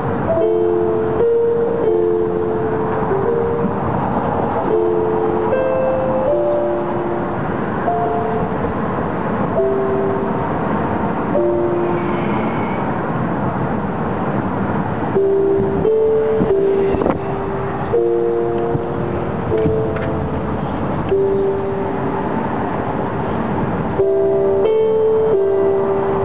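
Steady road and engine noise from a moving car, with music playing over it: a slow melody of held notes that step up and down.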